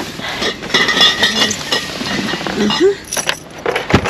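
Cardboard cases of drinks being shifted and loaded into a car's boot, the containers inside clinking and rattling, with a sharp knock near the end as a case is set down.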